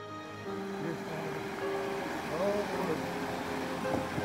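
Rushing water of a shallow rocky mountain stream coming up about half a second in, as a steady hiss, with background music and voices over it.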